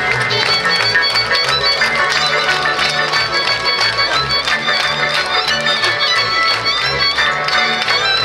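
Slovak folk band playing live: several violins bowing a quick melody over a low bass line that changes note about twice a second.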